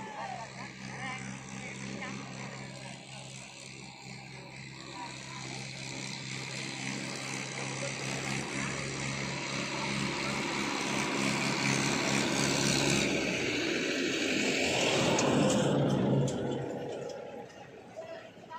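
A motor vehicle's engine drone, growing steadily louder for about fifteen seconds and then cutting off near the end, with voices over it.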